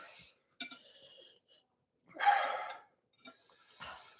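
A person breathing hard through the mouth against the burn of very spicy chili food: a faint hiss of breath, then a louder sharp exhale or gasp about two seconds in.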